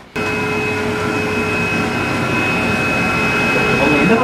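Steady whirring of a motor-driven blower with a high whine over it. It starts abruptly just after the start and holds at an even level.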